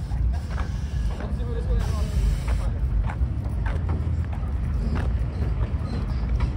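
Steady low rumble of car engines running, with people talking and scattered clicks and clatter over it.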